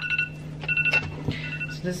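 Smartphone alarm beeping: short high beeps repeating about every three-quarters of a second, signalling time for class.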